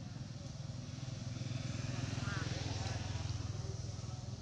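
A motorcycle engine running, a low pulsing rumble that grows louder towards the middle and eases off near the end, as if passing by.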